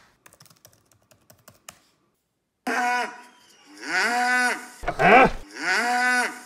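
Faint laptop key taps, then a cow mooing loudly about four times, the longest call about a second. It is a cow-mooing video played back.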